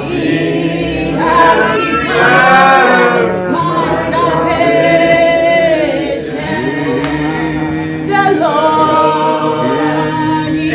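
A woman and a group of voices singing a gospel song in church, with long held, wavering notes.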